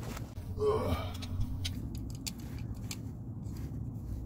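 Scattered sharp metal clicks and scrapes of an adjustable oil filter wrench being fitted and worked against a stuck oil filter, with a short effort sound from the worker about a second in.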